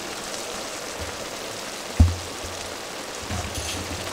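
Pan of chicken, potatoes and carrots simmering in a little water, with a steady sizzle. A single sharp knock comes about halfway through.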